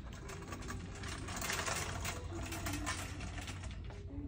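Shopping cart rolling over a hard store floor, its wheels and wire basket giving a fast, uneven rattle that is busiest in the middle.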